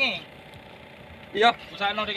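A man's voice in short bursts at the start and again from about one and a half seconds in, over a faint steady engine hum.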